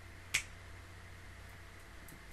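A single short, sharp click about a third of a second in, over faint steady hiss.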